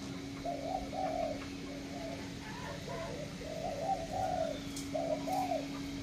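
Spotted doves cooing in repeated short phrases, with a steady low hum underneath.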